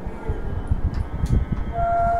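A gap between sung phrases of a Carnatic lesson, filled with a low, uneven rumbling noise; near the end a voice begins one steady held note.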